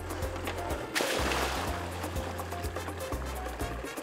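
Background music with steady bass notes. About a second in, a splash as a plastic artificial fish habitat structure is dropped from a boat into the pond.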